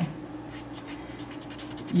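Paper stump (tortillon) rubbing charcoal into toned drawing paper in quick short strokes, shading in the darks.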